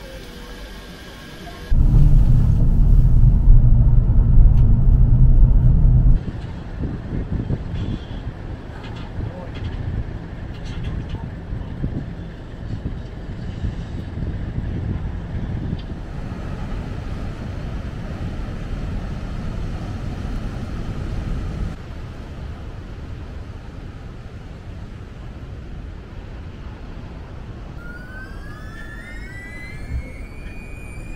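Low rumbling noise, much louder for about four seconds starting about two seconds in, then steadier and softer. Near the end a rising whine comes in as a cable-car gondola runs into the station.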